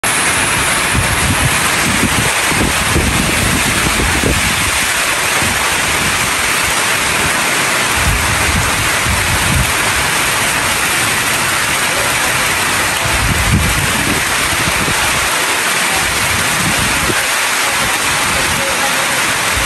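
Heavy rain pouring steadily onto a corrugated metal roof and running off its edge, a dense even hiss, with low rumbling swells now and then.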